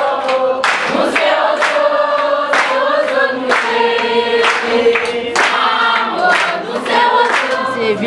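A group of voices singing together, holding sustained notes, with sharp hand claps keeping time throughout.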